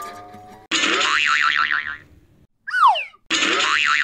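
Cartoon sound effects: a warbling spring boing starts suddenly about a second in, a short falling whistle follows around three seconds, then the same boing comes again near the end.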